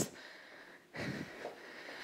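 A woman's breathing while she exercises, soft and breathy, with one breath fading out near the start and another about a second in.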